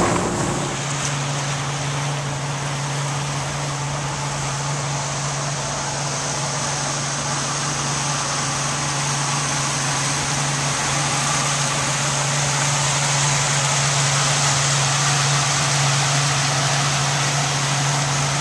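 A boat's motor running steadily underway: a low, even hum over a constant hiss, growing a little louder in the second half.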